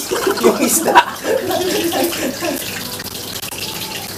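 Whole milkfish frying in hot canola oil in a wok, a steady sizzle.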